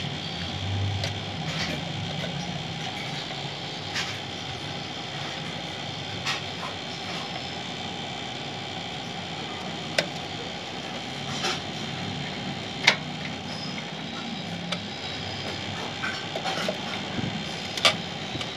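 Scattered short clicks and small knocks of a SATA data cable and its plastic connectors being handled and pushed onto a hard drive inside a desktop PC case, over a steady background noise.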